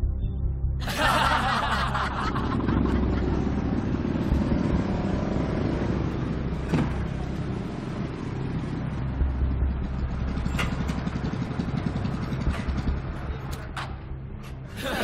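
Several motorcycle engines running as a group of bikes rides up, with background music underneath.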